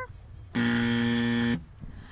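Game-show style wrong-answer buzzer sound effect: one flat, low buzz lasting about a second, starting and stopping abruptly about half a second in. It marks the guess just given as wrong.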